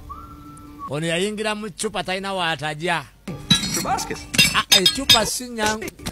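A glass bottle clinking and knocking sharply many times, as a hawk's beak pecks at it, through the second half. Before that comes a long wavering voice-like wail, opened by a brief steady whistle-like tone.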